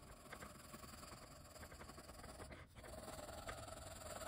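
Faint scratching of a graphite pencil shading on textured drawing paper, with quick back-and-forth strokes that grow a little louder near the end.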